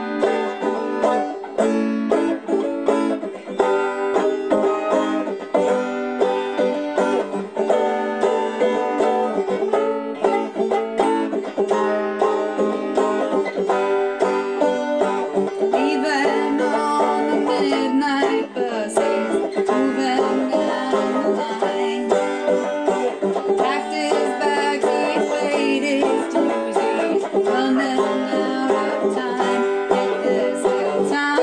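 Banjo played in a steady stream of quick plucked notes.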